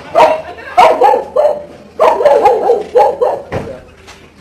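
A dog barking, a run of short sharp barks about two a second.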